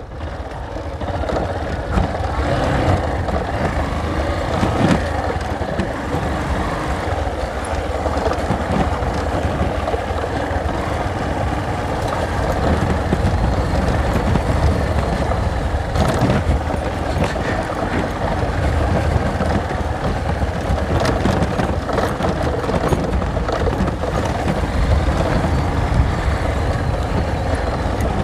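Motorcycle engine running steadily while riding on a dirt track, mixed with dense road and wind noise. A few sharp knocks are heard along the way.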